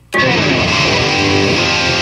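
Goldtop Les Paul-style electric guitar played loud through an amp. It comes in abruptly just after the start, then keeps up dense, ringing playing at a steady level.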